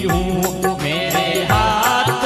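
A man's voice singing a Hindi devotional bhajan (an aarti) into a microphone, gliding through long held notes. Deep drum strokes land twice, and a steady high, rattling percussion rhythm runs beneath the voice.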